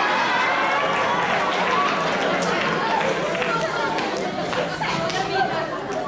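Many voices talking at once: an audience chattering in a large hall, fading slightly near the end.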